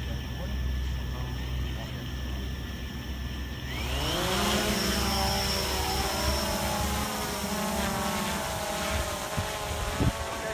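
Quadcopter drone's electric motors and propellers spinning at a steady pitch while it sits on the ground. About four seconds in, the pitch rises sharply as it throttles up and lifts off, then the hum wavers as it climbs away.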